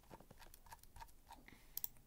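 Faint computer mouse clicks as a list is scrolled: about a dozen small, unevenly spaced clicks, with a sharper cluster near the end.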